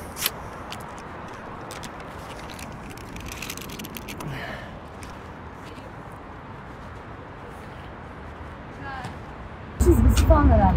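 Steady outdoor background noise with faint voices at low level and a light tap near the start.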